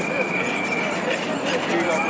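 A steady high-pitched squeal held for about a second, sounding again briefly near the end, over the chatter of a street crowd.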